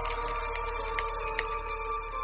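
Faint small clicks and handling noise of a little metal claw locket necklace and its chain being fiddled open by hand, over a steady background hum of a few held tones.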